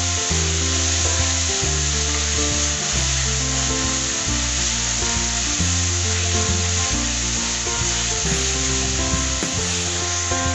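Chopped tomatoes, onions and curry leaves sizzling in oil in a kadai as a spatula stirs them, a steady frying hiss while the tomatoes cook down. Background music of held low notes plays over it.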